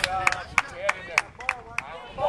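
Hands clapping in a steady run of sharp claps, about three a second, as encouragement, with voices calling between them.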